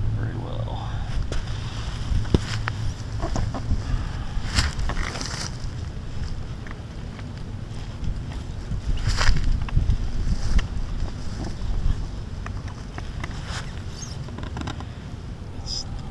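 Wind buffeting the microphone: a steady low rumble, with scattered short knocks and rustles.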